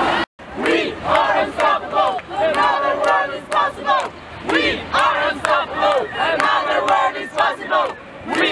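A crowd of marchers shouting and chanting slogans, many voices overlapping in short rising and falling calls, after the sound cuts out abruptly just after the start.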